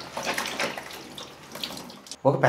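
Water running from a tap and splashing, uneven and fading toward the end.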